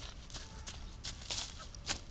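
Running footsteps crunching on dry leaf litter, about three steps a second, coming closer and loudest near the end.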